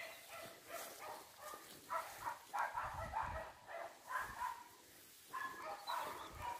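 Wire-haired dachshund puppies yapping, faint, in a run of short bursts every half second or so.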